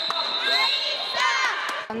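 Young girls clapping their hands and children's voices calling and cheering in a sports hall, over a steady high-pitched tone that cuts off near the end.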